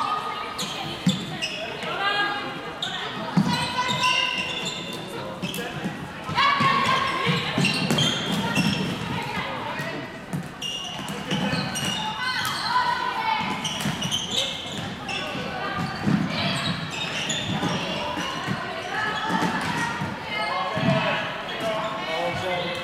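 Floorball play in a large hall: sticks clacking on the plastic ball and on the court floor and players' shoes on the court, in frequent short sharp clicks, with players' voices calling out and echoing.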